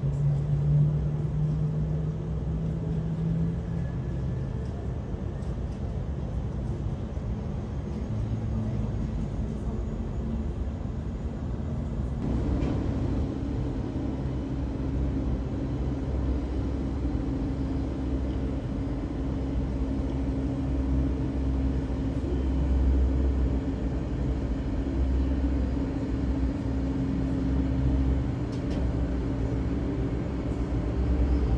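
Airbus A320neo airliner taxiing at idle engine power: a steady low rumble with a droning jet hum that steps up in pitch about twelve seconds in.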